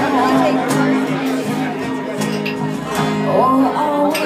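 Live acoustic cover performance: strummed acoustic guitar accompanying female vocals, with audience chatter in the room.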